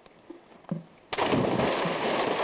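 A person jumping into a swimming pool: a loud splash as the body hits the water about a second in, then water churning and spraying.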